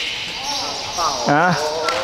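A man's voice making two short "ah" sounds over a steady high hiss.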